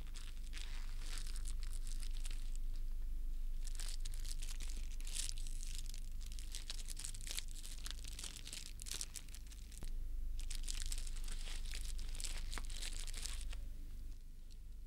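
Irregular crackling and rustling noise like crumpling, coming in waves of a second or two, over a steady low mains hum.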